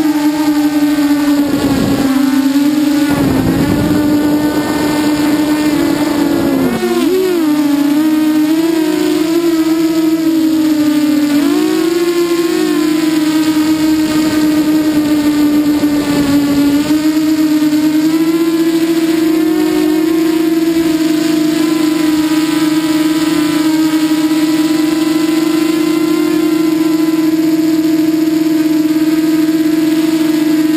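Walkera Runner 250 quadcopter's brushless motors and propellers whining, recorded by the camera on board. In the first half the pitch wavers and dips with the throttle, with a few brief rushes of air noise. From about halfway on it holds a steady pitch.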